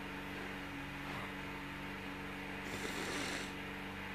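A crying woman sniffling: one long noisy breath in through the nose about three seconds in, over a faint steady electrical hum.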